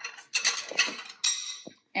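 Kitchen handling noises: utensils and dishes clattering, with a few clicks and a knock near the end.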